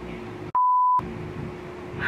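A single steady, high-pitched censor bleep lasting about half a second, cut in about half a second in. All other sound drops out under it.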